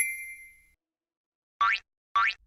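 Cartoon sound effects: a bright, bell-like chime rings out and fades over about half a second, then a pause, then a quick rising swoop near the end.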